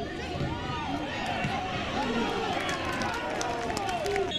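Several voices shouting over one another on a football pitch, players and onlookers calling out during play, with a few sharp clicks in the second half.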